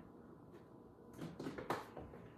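Spice bottles and jars knocking and rattling as a hand rummages in a kitchen cabinet: a quick run of small clicks and knocks starting about a second in.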